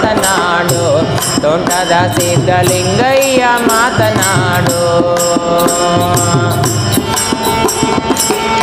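Live devotional music: a tabla keeps a steady beat under a wordless sung melody with sliding ornaments, which settles into long held notes in the second half.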